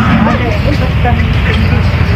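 Indistinct voices of people talking in the background over a steady low rumble.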